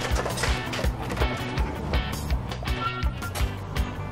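Background music with a steady drum beat, about three beats a second, over a sustained bass line.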